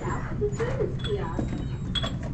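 Indistinct talking from people a short way off, over a steady low hum, with a short click at the end.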